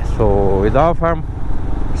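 A man talking over the steady low rumble of a motorcycle engine running as the bike rides along.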